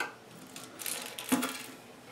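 Faint clicks and scraping of plastic and rubber parts being handled inside an empty porcelain toilet tank as the old flapper is unhooked, with a sharper click about a second and a half in.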